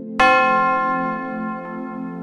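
A single bell struck once, a quarter-second in, then ringing out and slowly fading. It sounds over a steady low drone of background music.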